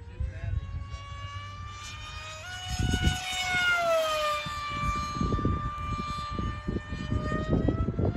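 RC plane's electric motor and pusher propeller whining in flight. The pitch steps up about two and a half seconds in, slides down over the next two seconds, then holds steady. Uneven low rumbling buffets run underneath.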